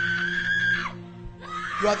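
A long, high held scream from a person that falls away just under a second in, over a steady sustained keyboard pad.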